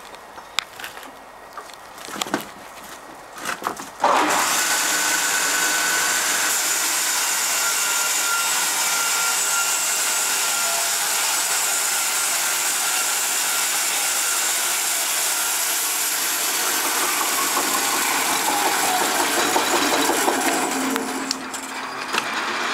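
Jonsered electric band sawmill cutting a board from a beam. After a few knocks, it comes on suddenly about four seconds in and runs loud and steady, with a faint whine, as the blade travels down the length of the beam.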